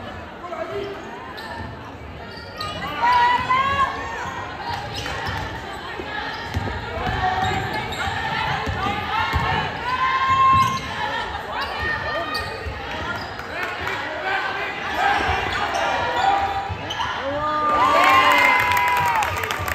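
Basketball dribbled on a gymnasium's hardwood floor during live play, amid players' and spectators' voices calling out, with the hall's echo.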